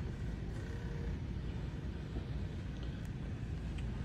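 Steady low background rumble of a large store's interior, with a couple of faint ticks near the end.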